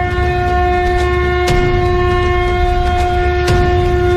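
A conch shell (shankha) blown in one long, steady held note. Sharp strikes come about every two seconds over a low rumble.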